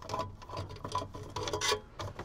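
Small scattered clicks and short scrapes of a screwdriver being handled in the hands, over a faint steady low hum.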